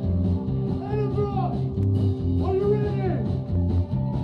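Live rock band playing amplified: electric guitars over a steady bass pulse, with a voice coming in over it in two long gliding phrases, about a second and two and a half seconds in.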